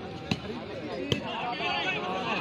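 A volleyball is struck hard twice: two sharp slaps less than a second apart. Under them many spectators are calling and shouting, and the voices grow louder in the second half.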